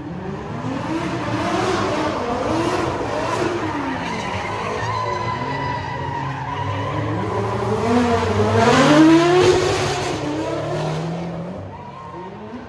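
Two drift cars sliding in tandem, their engines revving up and down with the throttle over the screech of spinning tyres. The sound builds to its loudest about nine seconds in as they come past, then fades.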